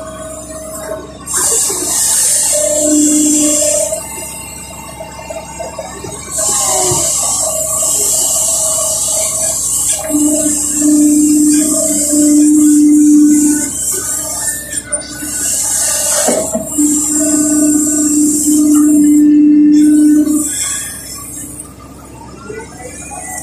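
Kobelco SK140 excavator working hard as it digs and lifts wet mud: its Mitsubishi D04FR diesel and hydraulics rise in several surges of a few seconds each. Each surge carries a loud rushing hiss and a steady whine, then eases off between bucket moves.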